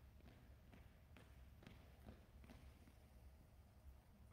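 Near silence, with faint footsteps on a hard floor at a marching pace, about two a second.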